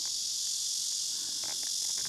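Steady, high-pitched insect chorus, a continuous shrill drone with no breaks.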